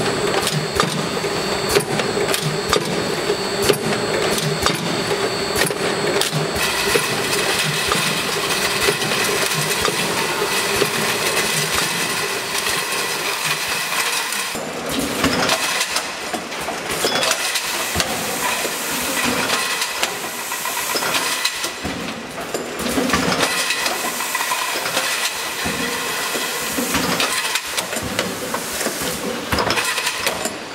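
Automatic jar filling and capping machine running: a steady mechanical hum with frequent sharp clicks and knocks as the star wheel indexes the jars and the capping heads work.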